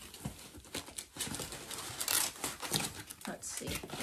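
Plastic packaging crinkling and rustling in quick, irregular crackles as a parcel is unpacked by hand.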